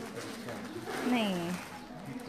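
Only a single short spoken word in a low voice, with nothing else standing out.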